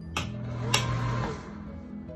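Two sharp clicks a little over half a second apart, a wall light switch turning on the bathroom light, over steady background music.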